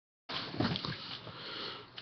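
Quiet sniffing and breathing of a man close to the webcam microphone, with a few short sniffs about half a second in.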